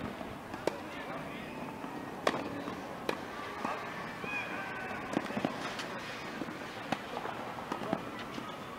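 Tennis balls struck by rackets during a baseline rally: a string of sharp pops a second or two apart, the loudest about two seconds in.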